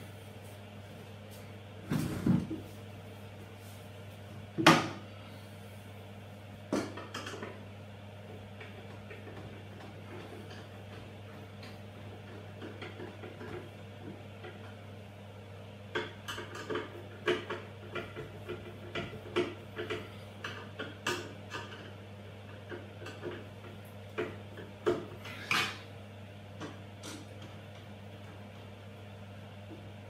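Scattered knocks and light clicks of hands working on wall-hung kitchen cabinets as a spirit level is set on top and the cabinets are adjusted for level. There is a sharp knock about five seconds in and a run of small clicks in the second half, over a steady low hum.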